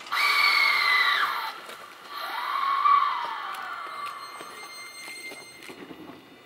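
A train's air horn sounds one blast of about a second right at the start, its pitch sagging as it cuts off. About two seconds in, a lower tone rises and then slowly falls away over the next couple of seconds, during slow yard shunting of Keikyu trains.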